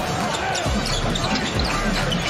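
Basketball bouncing on a hardwood court as it is dribbled, a few bounces heard over the steady din of a large arena.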